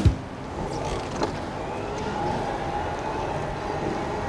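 An electric cargo bike pulling away on wet paving: steady tyre and road noise with a faint steady whine from the assist motor, and a single click about a second in.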